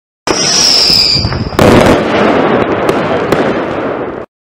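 Fireworks: a high whistle that falls slightly in pitch, then a loud bang about a second and a half in, followed by dense crackling that cuts off abruptly.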